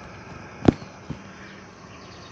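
A single sharp click about two-thirds of a second in, followed by a much fainter one half a second later, over a steady low background hiss.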